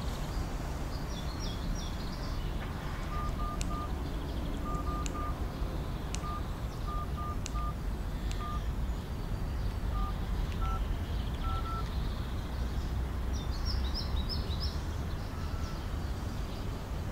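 Mobile phone keypad beeping as buttons are pressed: a string of short, uneven beeps at one pitch for several seconds, over a steady low outdoor rumble. Bird chirps come at the start and again near the end.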